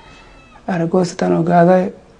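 A man speaking: one short phrase in the middle, with brief pauses before and after it.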